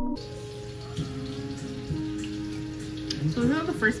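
Panko-breaded shrimp frying in hot oil in a wok: a steady sizzle with small pops. A woman's voice comes in near the end.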